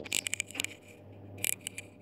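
A few short sharp clicks and light scraping sounds, grouped near the start with another click about halfway through, over a faint steady low hum.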